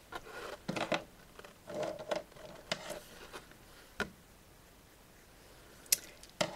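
Light clicks and taps, several in a few seconds with a sharper click near the end, from felt-tip liner pens and their plastic caps being handled and set down on the desk.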